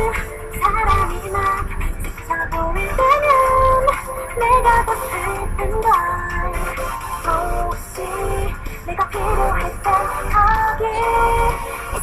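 K-pop girl-group song playing, with several light, high female voices singing over a pop backing track.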